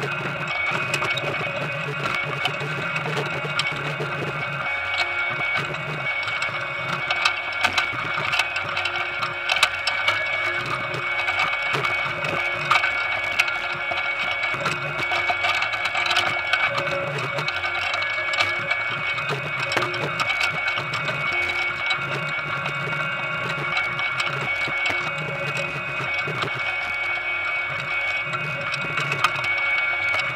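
Potato harvester machinery running with a steady whine and hum, with potatoes clattering and knocking as they are sorted by hand.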